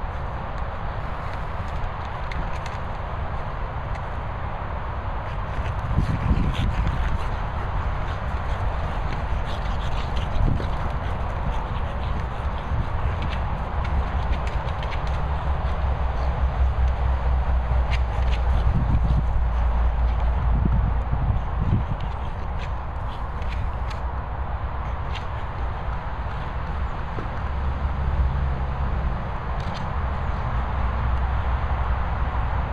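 A bulldog playing with a hard plastic Boomer Ball: scattered knocks, taps and scrapes of ball and paws, with a continuous low rumble underneath.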